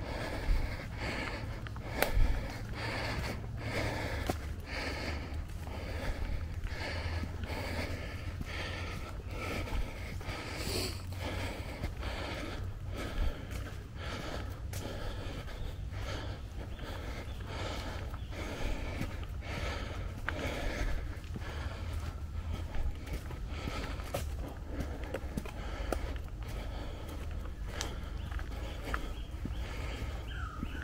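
Footsteps on a dirt and leaf-litter trail, about two a second, steady throughout, with a walker's breathing on a steep uphill climb.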